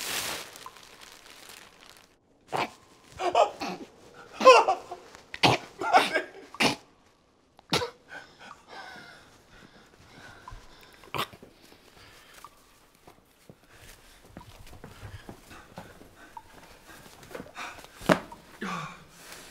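A man's wordless vocal sounds, short gasps and breaths, clustered in the first seven seconds, then a few sharp clicks and faint low-level sound.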